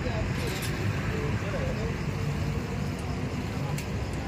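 Steady rumble of road traffic, with indistinct voices talking underneath.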